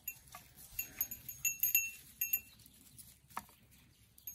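Small bell on a goat's collar jingling as the goat moves, a scatter of light rings over the first two seconds or so. A single sharp click follows about three and a half seconds in.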